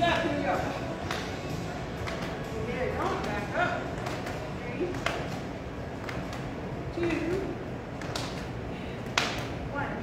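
A woman's voice in short, indistinct phrases, muffled and echoing in a large room, with a few scattered thuds.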